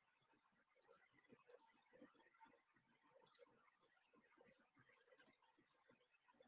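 Near silence with about four faint computer mouse clicks spread across it, some in quick pairs.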